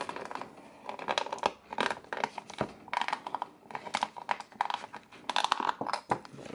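Stiff clear plastic blister packaging being opened, with irregular crackles, clicks and snaps of the plastic coming in clusters throughout.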